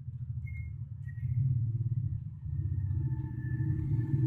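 Low, steady background rumble with a faint high whine that comes in about a second in.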